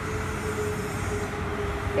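Steady low rumbling background noise with a faint, even hum running under it.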